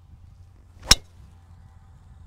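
A driver striking a golf ball off a tee: a short rush of the downswing rising into one sharp crack about a second in.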